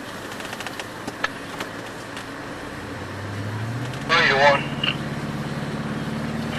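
Vehicle engine heard from inside the cab, its note rising about three seconds in as the vehicle accelerates and then running steady. Scattered light rattles come first, and near the end there is a short burst of voice followed by a brief high beep.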